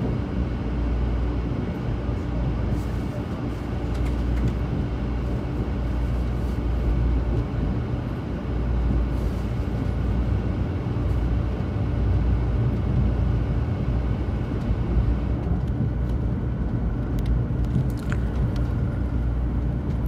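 Steady low rumble of a 500 series Shinkansen heard from inside the carriage, running at reduced speed. A few light clicks come near the end.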